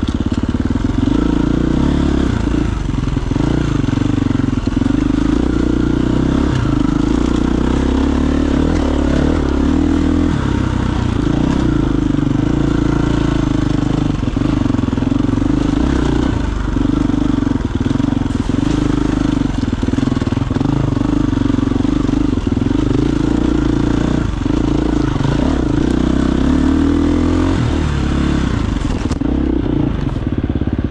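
KTM 350 EXC-F single-cylinder four-stroke dirt bike with an FMF exhaust, ridden on singletrack. The engine note rises and falls every few seconds as the throttle is opened and rolled off.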